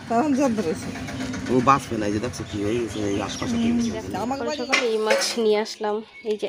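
People talking: voices running through, with only short pauses.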